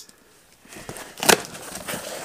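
Paper being handled: rustling that starts under a second in, with one loud crackle just past the midpoint.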